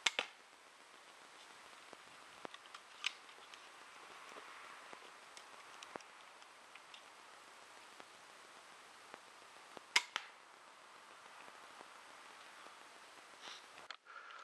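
Armex pistol crossbow fired once about ten seconds in: a single sharp crack of the string and bolt, the loudest sound, followed closely by a smaller knock. Faint outdoor hiss and a few light clicks before it.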